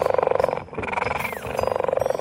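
Cheetah growl sound effect: a rapid, pulsing growl in three stretches of about half a second each.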